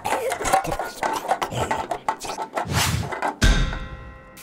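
Film soundtrack of music mixed with action sound effects, with a heavy low thud about three and a half seconds in followed by a fading tone.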